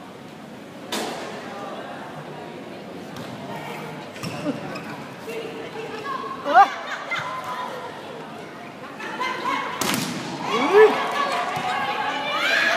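Volleyball rally in a sports hall: the ball is struck sharply about a second in and again near ten seconds, with short shouts from players and spectators, the loudest ones rising and falling in pitch in the middle and near the end.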